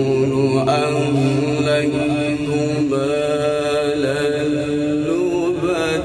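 A man reciting the Quran in a melodic, drawn-out chant, holding long sustained notes with wavering ornaments. The melody shifts pitch about five seconds in.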